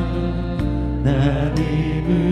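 Live church worship band playing a slow worship song, with sustained keyboard chords.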